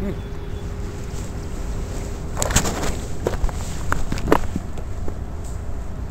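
Steady low wind rumble on the microphone. About two and a half seconds in, a rustling burst of handling noise, then a few sharp clicks over the next two seconds, as a small bass is let go and the fishing rod is taken up again.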